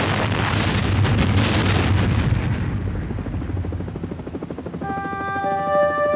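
A loud, rough roar with a low throb that dies down over about three seconds, leaving an uneven pulsing rumble. Sustained synthesizer chords come in near the end.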